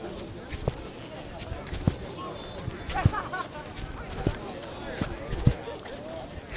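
Irregular muffled knocks and rubbing from a phone being handled with its lens and microphone covered, about six knocks at uneven intervals, the loudest near the end, over a murmur of distant voices.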